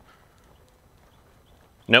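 Faint, scattered footsteps of a person and a leashed dog walking on a concrete sidewalk, ending in a short, sharp spoken 'nope' as a correction.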